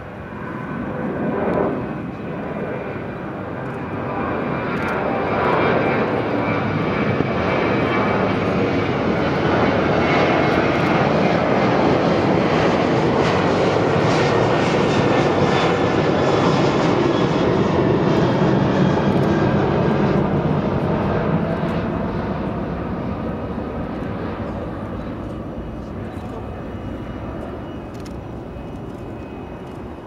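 Jet aircraft engines: a broad rushing noise that builds over several seconds, stays loud through the middle and fades away near the end, with faint whining tones bending in pitch as it goes.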